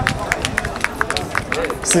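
A quick, irregular string of sharp taps or clicks, about six a second.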